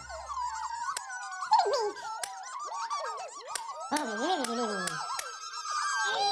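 A crowd of tiny, high-pitched squeaky cartoon voices chattering and squealing together, their pitches sliding up and down, with a few light clicks mixed in.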